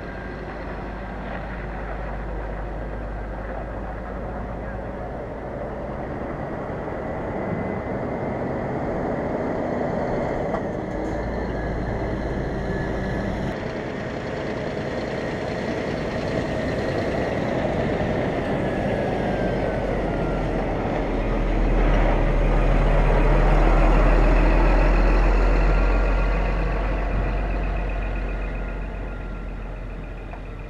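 Articulated lorry reversing slowly, its diesel engine running at low revs. The sound grows louder as the lorry comes nearer and is loudest about three-quarters of the way through.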